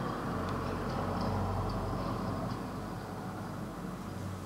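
A steady low rumble under a hiss, swelling a little through the middle and easing near the end, with a few faint light ticks.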